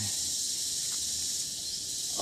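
A steady, high-pitched chorus of jungle insects, a continuous hiss-like buzz.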